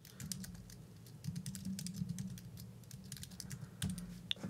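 Typing on a computer keyboard: a faint, irregular run of key clicks over a low steady hum.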